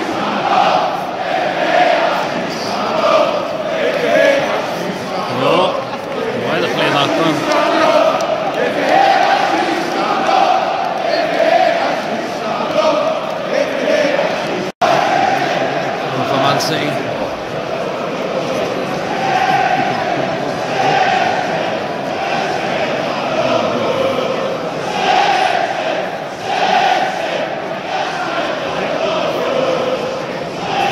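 Large football stadium crowd, a continuous noise of thousands of voices with chanting swelling and falling. About halfway through there is a sudden split-second break where the recording cuts.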